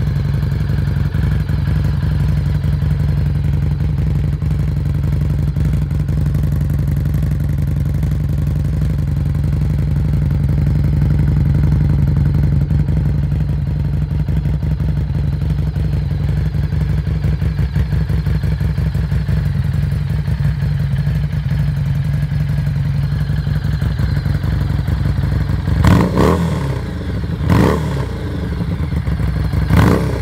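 The Harley-Davidson Street XG500's 500 cc liquid-cooled V-twin idling steadily, heard close to the exhaust. Near the end the throttle is blipped three times in quick, short revs.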